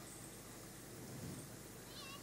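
Quiet room tone with a faint, short, high-pitched animal call, one falling call coming right at the end.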